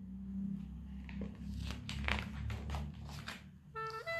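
A picture book's paper page being turned and smoothed down by hand: a run of soft paper rustles and small clicks over a low handling rumble.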